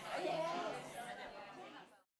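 Indistinct chatter of several voices in a large room, fading down and cutting off to silence at the very end.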